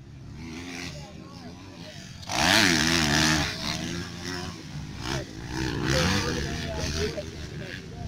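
Motocross dirt bike engines revving, their pitch rising and falling as the throttle is worked. The loudest stretch is a bike close by from about two seconds in, lasting about a second, with voices mixed in.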